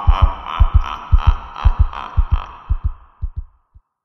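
Heartbeat sound effect: paired low thumps about twice a second over a droning hum. Both fade away and stop shortly before the end.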